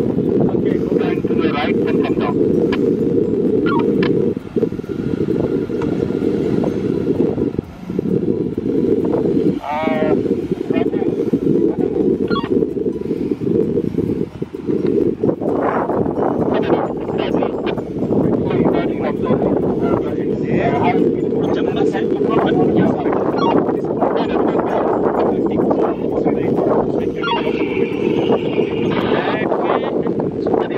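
Wind buffeting the microphone in a steady, loud rumble, with muffled, indistinct voices breaking through now and then.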